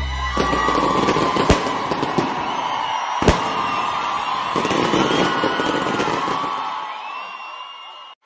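Fireworks: skyrockets whistling and crackling, with two sharp bangs about one and a half and three seconds in, the whole fading out near the end.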